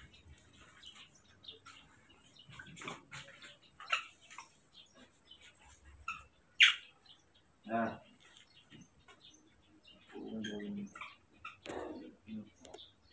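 Baby macaques giving short high squeaks and chirps at food, with one louder rising squeal a little past halfway.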